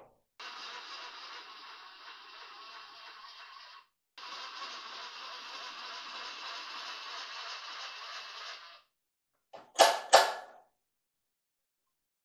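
A steady mechanical whir in two stretches, with a short break about four seconds in, then two sharp metal clanks near the end as the long steel bar is shifted and set down in the milling-machine vise.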